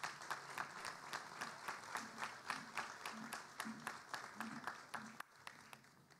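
An audience applauding with scattered hand claps, faint and thinning out shortly before the end.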